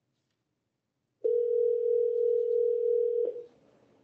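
Telephone ringback tone heard on the calling line: a single steady ring of about two seconds, starting about a second in and cutting off sharply. It means the dialed phone is ringing and the call has not yet been answered.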